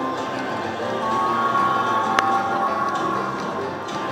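Lucky Pot video slot machine playing its bonus music and reel sounds while the free spins run, with a single sharp click about two seconds in.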